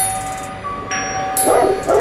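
Hip-hop instrumental outro: a beat carrying a chiming, bell-like melody of held notes. Two short loud bursts come about a second and a half in, in quick succession.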